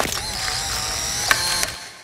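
Polaroid instant camera taking a picture: a shutter click, then the film-ejection motor whirring steadily for about a second and a half as the print comes out, with another click near the end before it fades away.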